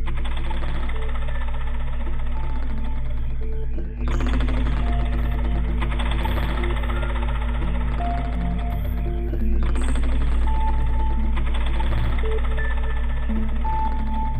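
A band playing live music: a deep, steady bass drone under a dense layer of sound, with short repeated high notes. The music changes abruptly about four seconds in and gets louder again about halfway through.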